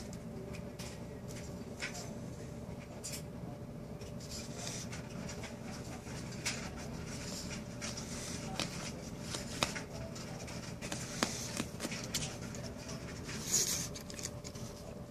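A pug sniffing with its nose against a shag carpet as it noses at a beetle, with scattered short clicks and scratchy rustles. There are two sharper clicks in the second half and a louder, hissy burst of breath near the end.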